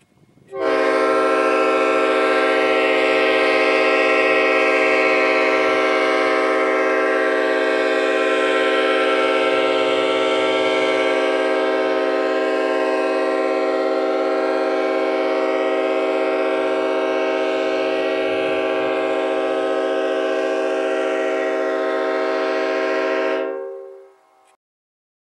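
Nathan P5A five-chime locomotive air horn, an old cast one, blowing one long continuous chord of steady tones, fed from a 20-gallon air tank at 120 PSI that drains with no compressor running. It starts about half a second in, grows slightly quieter as the tank pressure falls, and stops shortly before the end when the valve is closed at 30 PSI.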